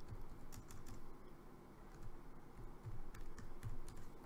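Typing on a computer keyboard: a scattered run of key taps at an uneven pace.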